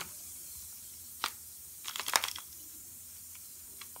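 Bath bomb fizzing in a tub of water, a steady faint hiss, with brief sharp splashes and clicks as a hand moves the plastic toy capsule in the water, once about a second in and several more around two seconds in.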